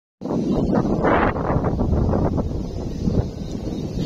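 Wind buffeting the microphone, with rustling from the rice plants as the camera moves through the paddy.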